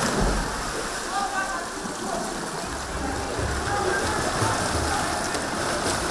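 Swimmers diving in and splashing as they race in a pool, a steady wash of water noise, with children's voices in the background.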